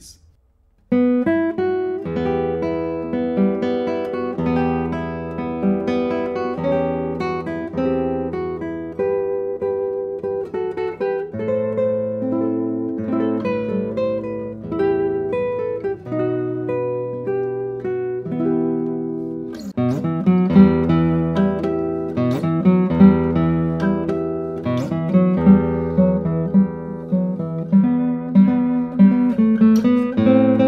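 Spruce-topped classical guitar with Indian rosewood back and sides and traditional seven-fan bracing, a Daniele Marrabello 2023 No. 165, played solo with the fingers. A piece starts about a second in, with a plucked melody over ringing bass notes and chords that carries on without a break.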